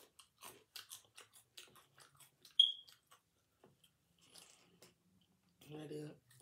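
Close-up mouth sounds of chewing curly fries: a run of short crunchy, clicky chews, several a second, for the first couple of seconds, then one sharp, loud smack about two and a half seconds in. The chewing goes on more softly after that.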